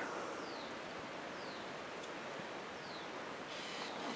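Faint, steady outdoor hiss of forest ambience, with three short, high, falling chirps from a bird about a second apart.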